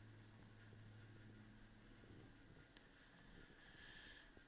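Near silence: room tone with a faint low hum that fades out about halfway through.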